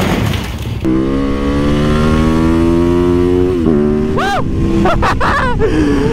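Supermoto motorcycle engine: a rough stretch of engine noise, then a steady climb in revs as the bike accelerates, followed by short quick rises and falls in revs, like throttle blips, from about four seconds in.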